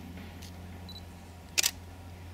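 A digital SLR camera's short, high autofocus beep, then about half a second later its shutter firing once as a quick, sharp double click of mirror and shutter.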